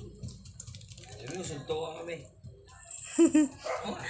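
Indistinct chatter of several people in a small room, with a short, loud two-part sound about three seconds in.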